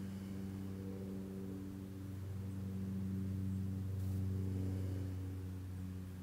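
Soft background music: a steady low drone of gong- or singing-bowl-like tones that swells a little in the middle.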